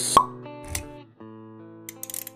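Logo-intro jingle: held musical tones with a sharp hit just after the start, the loudest moment, and a softer pop just under a second in; the tones then fade, with a few bright ticks near the end.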